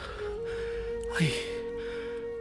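Soft background music holding one steady note, with a breathy gasp and a short 'ayy' exclamation from a voice about a second in.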